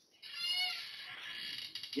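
A short high-pitched whine from a small pet about a quarter second in, trailing into a faint hiss.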